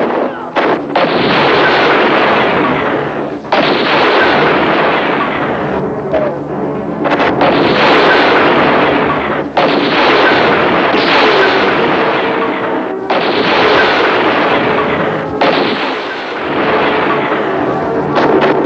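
Film battle sound effects: a string of about six explosions, each a sudden blast that rings on and dies away over two to three seconds before the next one hits.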